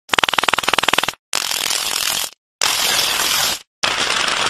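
Heavily distorted, effects-processed logo audio chopped into pieces about a second long, each cut off abruptly by a short silence. The first piece is a rapid buzzing stutter of evenly spaced clicks. The next three are bursts of harsh noise.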